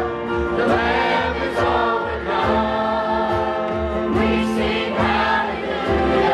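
Live contemporary worship band playing a praise song: acoustic guitar with several male and female voices singing together in long held notes over a steady beat.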